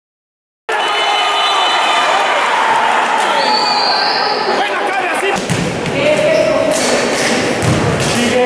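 After a moment of silence the sound cuts in abruptly: players and spectators shouting, echoing in a large indoor gym, with low thuds of the futsal ball being kicked and bouncing on the hard court floor.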